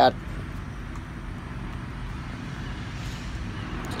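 Steady, low outdoor background noise: an even rumble and hiss with no distinct events.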